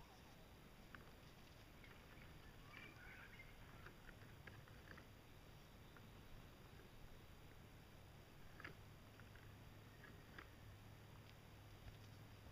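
Near silence, with a few faint scattered ticks and a faint low hum.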